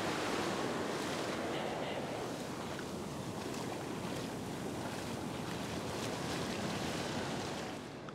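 Ocean surf breaking and washing up a sandy beach in a steady rush.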